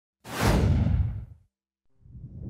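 A single deep whoosh sound effect for a logo intro: it sweeps in suddenly about a quarter second in and fades away within about a second.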